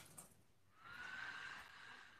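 A faint click at the start, then a faint squeak with a hiss lasting just over a second, its pitch rising slightly and then holding.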